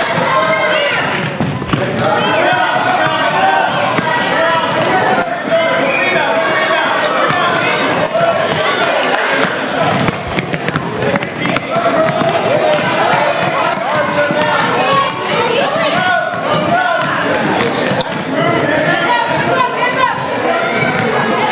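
A basketball being dribbled on a hardwood gym floor, amid continuous chatter and shouts from children and spectators, echoing in a large hall.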